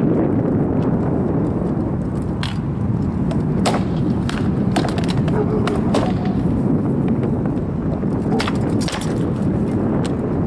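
Rattan swords knocking against shields and armour in scattered clusters of sharp strikes, over a steady rumble of wind on the microphone.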